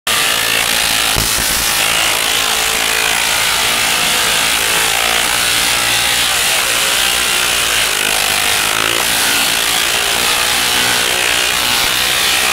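Large Tesla coil (a 3-million-volt resonator) firing continuously, its arcs breaking down the air with a loud, steady, rasping buzz.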